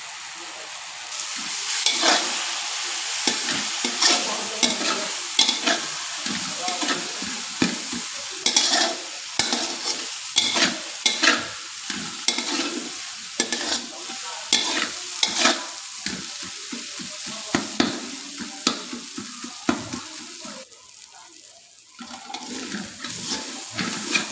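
Onions and powdered spices sizzling in hot oil in a metal kadai, stirred and scraped around the pan with a metal spatula in quick, irregular strokes: the masala is being fried. The sizzle starts about a second in and dips briefly near the end before the stirring picks up again.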